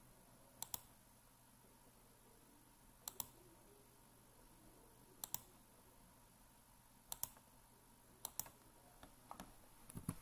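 Computer mouse button clicking: about six quiet press-and-release clicks spaced a second or two apart, each placing a copy of an object in a CAD drawing.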